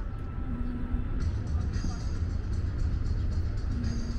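Outdoor ambience: a steady low rumble, with faint music and snatches of voices over it.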